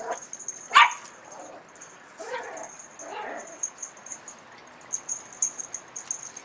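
Small dog barking: one sharp, loud bark about a second in, then two quieter, longer calls about a second apart.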